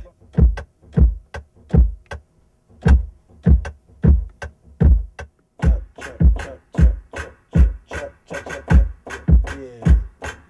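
Programmed hip-hop drum sounds played live on a keyboard controller: a kick drum about every two-thirds of a second at an unhurried tempo, with a short break near two seconds in. Lighter snare and hi-hat clicks join between the kicks in the second half as the drum line is worked out.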